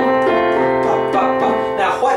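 Casio Privia digital piano playing a steady pattern of repeated notes and chords, about three attacks a second, each note ringing on until the next.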